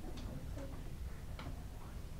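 Quiet room tone: a low steady hum with a few faint, irregularly spaced clicks.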